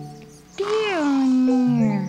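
A dog's long whine, one call that glides down in pitch for about a second, over background music with held notes.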